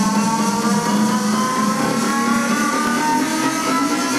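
Electronic dance music mixed live from CDJ decks, with a synth tone climbing steadily in pitch over a steady beat, a riser sweep.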